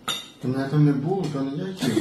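A spoon and knife clinking and scraping against a plate, with a person's voice sounding over them.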